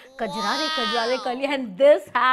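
A woman's voice only: a long, high-pitched exclamation that falls in pitch, followed by quick speech.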